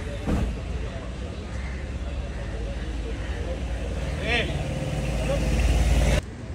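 Street noise dominated by a low vehicle rumble that grows louder toward the end, with background voices, a short bump just after the start and a brief high-pitched chirp about four seconds in.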